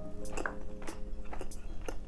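Close-miked chewing of grilled chicken eaten by hand: several sharp, wet mouth clicks at irregular spacing. Soft background music with held notes plays under it.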